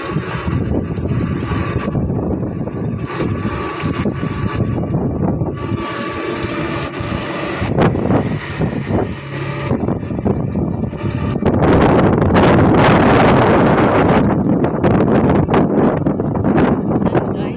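A motor vehicle running, with a continuous rushing noise that grows louder from about eleven seconds in.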